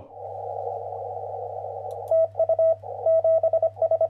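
Closing jingle made of radio sounds: a steady band of receiver hiss over a low hum, then from about two seconds in a Morse code tone keyed in dots and dashes, as heard from a CW signal on a shortwave receiver.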